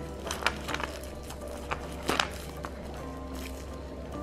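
Soft background music under a few light clicks and rustles: a plastic wrapper being handled and wooden number-puzzle pieces being moved on the board, the loudest click about two seconds in.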